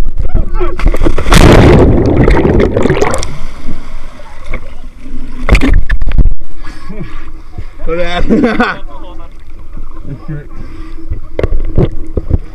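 A person jumping into the sea with the camera: a loud splash of water entry about a second in, lasting about two seconds, then water sloshing around the camera at the surface, with a second short rush of water near the middle.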